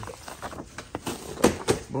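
Paper instruction sheet and plastic packaging being handled and pulled from a cardboard box: a run of short rustles and crackles, with two louder crackles near the end.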